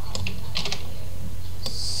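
Computer keyboard keystrokes in a few short clusters, with a steady low hum underneath.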